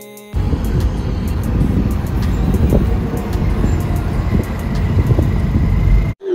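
Road and traffic noise heard from inside a moving car: a loud, steady, churning rumble that begins abruptly about a third of a second in.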